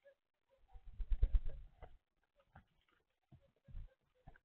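Eurasian collared doves jostling and pecking on a seed-feeder tray right at the microphone: a second-long cluster of bumps and scuffles about a second in, then a few scattered single taps.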